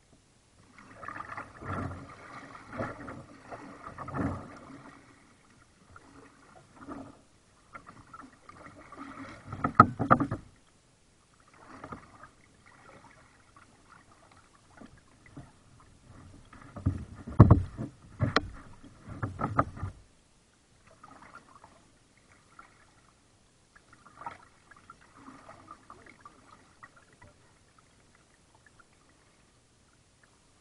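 Kayak paddling: water splashing and dripping from the paddle blades in uneven bursts of strokes, with a few sharp knocks, likely the paddle striking the plastic hull. The strokes pause for a few seconds here and there and grow sparse near the end.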